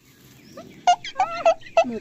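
Domestic chicken clucking: a few short, high-pitched calls about a second in. A woman starts speaking near the end.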